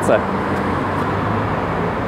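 Steady background vehicle noise: a low, even hum with road-traffic haze and no distinct events.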